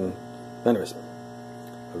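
A steady low electrical hum, with a brief vocal sound about two thirds of a second in.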